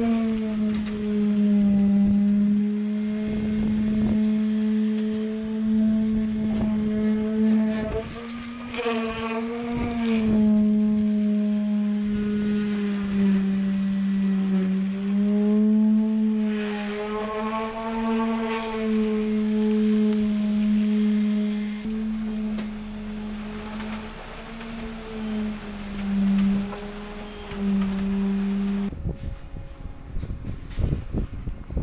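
A motor running with a steady low hum whose pitch dips slightly now and then, with a few knocks and clicks along the way; it cuts off suddenly near the end.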